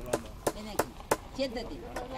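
A hand tool striking in sharp repeated knocks, about three a second, while a signpost is worked into the ground.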